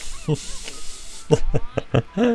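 Anime characters' dialogue, short spoken lines in Japanese, with a breathy hiss through the first second and faint background music.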